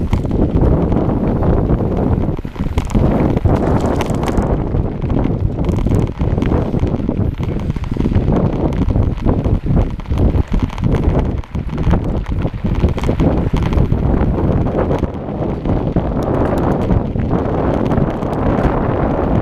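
Wind buffeting the microphone while a mountain bike rides over a rough dirt and gravel trail, with a constant noise and frequent short rattles and knocks from the bumpy ground.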